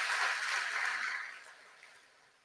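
Audience applause in a hall, heard as a soft even hiss that fades out about a second and a half in and leaves dead silence.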